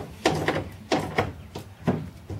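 A handful of short clicks and knocks, about five, from metal and plastic parts being handled and fitted under a car's dashboard.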